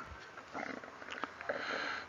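Faint pause between spoken sentences: quiet room tone, then a soft intake of breath near the end, just before the voice resumes.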